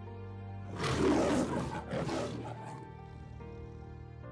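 Soft sustained background music with a big-cat roar sound effect breaking in about a second in and fading over roughly two seconds, with a second swell partway through.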